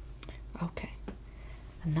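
Soft, whispery speech, with a few light clicks before the voice picks up near the end.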